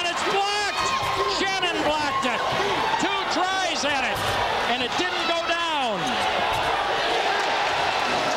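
Basketball sneakers squeaking on a hardwood gym floor in many short, high-pitched chirps, with a basketball bouncing and thudding, over the chatter of a crowd in the gym.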